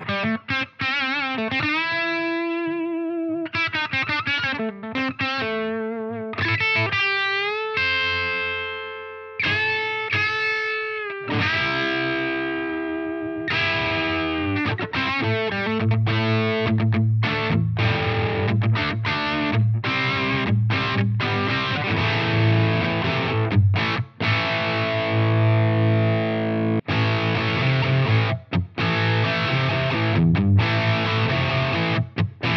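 Electric guitar played through a Flattley Plexstar plexi-style overdrive pedal into a Supro amp, mildly distorted with the gain set just above its lowest. For about the first eleven seconds it plays sustained single-note lead lines with bends and vibrato, then it moves to fuller, denser chord riffing with short stops.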